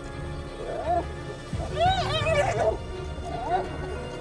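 Spotted hyenas fighting: short, high-pitched squealing calls that rise and fall in pitch. One comes about a second in, a quick run of them around two seconds in is the loudest, and another comes near the end, over a low music bed.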